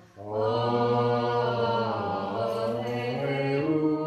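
A man's voice chanting Orthodox liturgical prayer on a nearly level pitch in long held phrases, after a short breath at the start.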